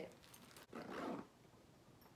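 A short, breathy voice sound about a second in, lasting about half a second.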